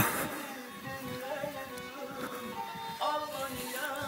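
Black Sea folk music with a wavering bowed kemençe melody, with a brief sharp knock right at the start.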